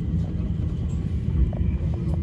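C25 Stockholm metro train running between stations, heard from inside the car: a steady low rumble of wheels on the track, a faint steady motor whine, and a few light clicks.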